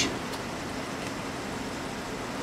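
Steady background hiss of outdoor location ambience, with no distinct event.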